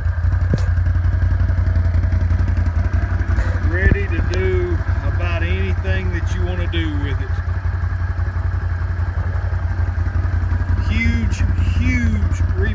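Can-Am Outlander 650 ATV's Rotax 650cc V-twin engine idling steadily.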